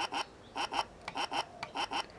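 Circuit-bent electronic 'No' button toy, fed from a 9-volt battery through a flashing LED and a 330 ohm resistor, giving pairs of short electronic chirps about every 0.4 seconds instead of saying 'no'. Through the LED and resistor it does not get enough current to articulate the word.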